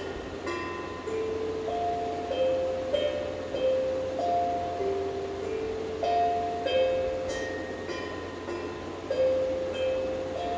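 A small pitched percussion instrument struck with a mallet, playing a slow, wandering melody of single ringing notes, a new note every half second to a second, each ringing on until the next.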